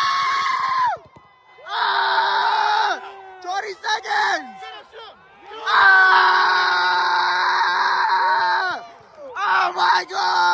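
People shouting from the mat side in long, held cries, several in a row with short breaks between them.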